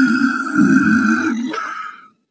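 A person's voice making a long, steady roar-like growl that fades out near the end.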